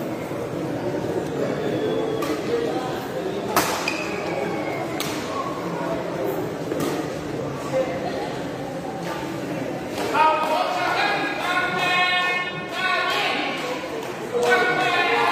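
Badminton racket strikes on a shuttlecock, a few sharp hits a second or more apart as in a rally, over the steady chatter of spectators in a large hall. Voices grow louder near the end.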